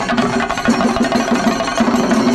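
Singari melam ensemble: many chenda drums beaten fast with sticks in a dense continuous roll, with hand cymbals ringing over them.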